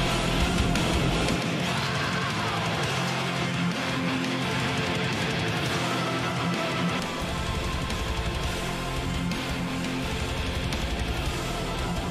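Music: a solo electric guitar playing chords, with no voice. The bass end thins out for a few seconds in the middle, then comes back.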